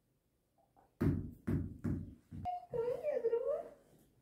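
A dog vocalizing: four short barks in quick succession, then a wavering, whining howl about a second long.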